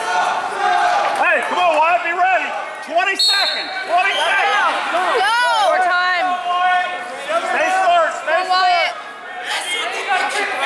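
Wrestling shoes squeaking on a gym wrestling mat, many short, high squeals in quick, irregular succession as two wrestlers move and tie up, with voices calling out in an echoing gym.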